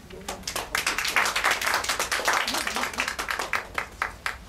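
A small audience clapping, building up within the first second and tapering off near the end.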